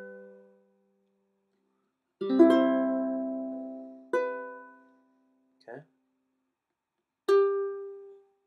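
Ukulele chords strummed one at a time, each left to ring out and fade. A chord dies away at the start, then come a quick pair of strums about two seconds in, another strum about four seconds in, and a last one near the end.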